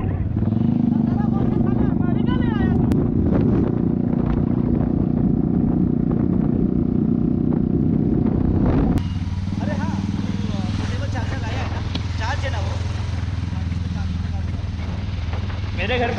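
Royal Enfield motorcycle riding at road speed, its engine note half-buried under heavy wind rumble on the microphone. About nine seconds in, the sound cuts to a quieter stretch where the engine's steady low note is clearer, with faint voices over it.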